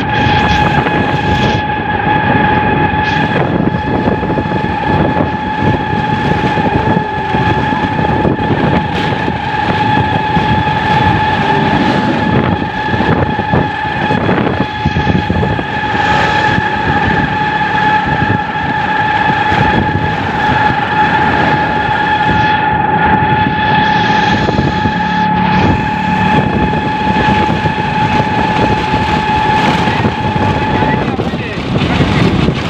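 Riding noise inside an open three-wheeled auto-rickshaw on the move: continuous road and wind noise with frequent knocks and rattles from the frame, under a steady high-pitched whine that holds one pitch throughout.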